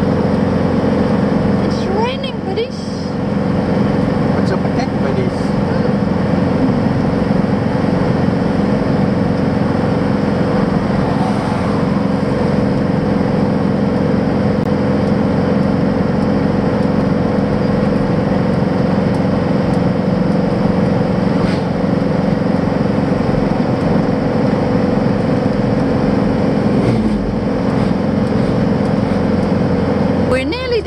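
Camper van's engine and road noise heard from inside the cab while driving, a steady drone.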